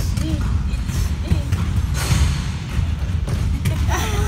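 Background chatter of several voices over a steady run of low thuds, with a brief burst of noise about halfway through.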